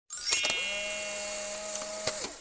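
Short intro jingle sound effect: a bright chime-like ring with a few clicks, settling into a steady held electronic tone.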